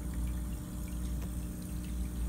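Aquarium equipment running: a steady low hum with a faint sound of moving, bubbling water from the tank's aeration.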